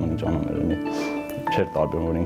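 A man's voice over soft background music with sustained tones.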